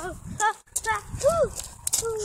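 A person's voice: a few short voiced sounds, the longest rising and falling in pitch about a second in.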